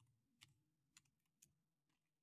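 Faint computer keyboard keystrokes typing a short word, a few separate clicks about half a second apart.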